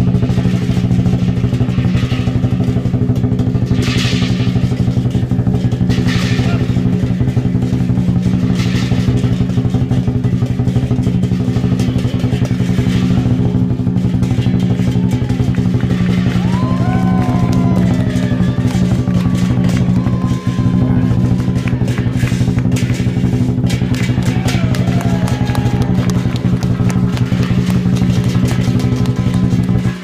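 Lion dance percussion: a big Chinese drum beaten in a fast, unbroken roll, with crashing cymbal strikes over it. A few voices rise over the playing from about the middle.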